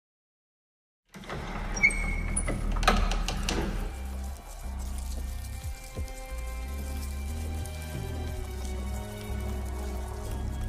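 Silence for about a second, then dramatic background music comes in: low held tones with a couple of sharp hits in the first few seconds.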